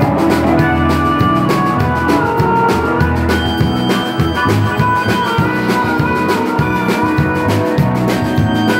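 Live band music in an instrumental break: an electronic keyboard over a steady drum beat, with a harmonica played along.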